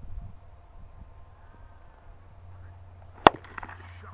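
A cricket bat striking the ball: one sharp crack about three seconds in, with a short ring after it.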